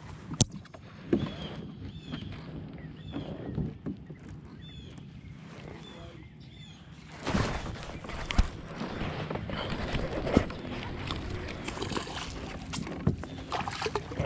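Lake water lapping and splashing against a kayak hull, with scattered knocks and clicks of gear being handled. A short high chirp repeats about once a second in the first half, and the water noise grows louder and splashier from about halfway through.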